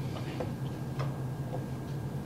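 Room tone with a steady low hum and a few faint, irregular ticks.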